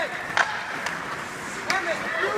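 Ice hockey play on a rink: skates on the ice and two sharp clacks of sticks and puck, about half a second in and again near the end, with voices calling out.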